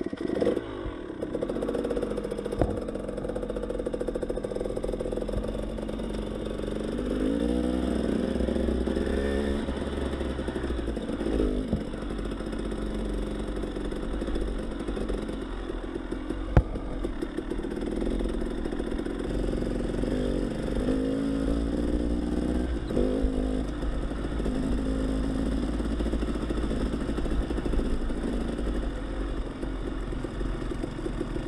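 Dirt bike engine under way on a rough dirt and gravel road, its pitch rising and falling several times as it revs and shifts, with stones clattering under the tyres. A single sharp knock comes about halfway through.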